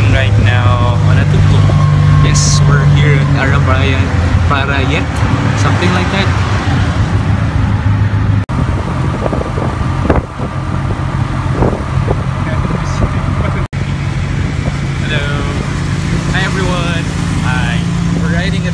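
Tuk-tuk's small engine running under way, heard from the open passenger seat: a loud low drone whose pitch rises and falls with speed. The sound briefly drops out twice.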